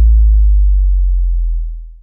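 A deep electronic sub-bass note from a DJ remix, the held tail of a final bass hit, sinking slowly in pitch as it fades and dying out just at the end as the track finishes.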